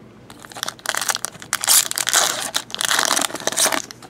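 Foil trading-card pack wrappers crinkling and crumpling as packs are opened. The crackling starts about half a second in and stops just before the end.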